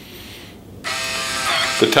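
Small built-in printer of a Neutronics Ultima ID refrigerant analyzer printing the test results: a steady motor buzz that starts a little under a second in.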